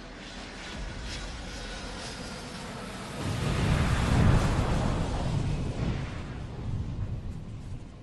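Explosion sound effect: a rushing noise builds, then a deep rumbling blast starts about three seconds in, peaks a second later and slowly dies away.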